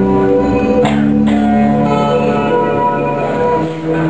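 Guitar playing: held chords ringing, with a new chord struck about a second in and another change near the end.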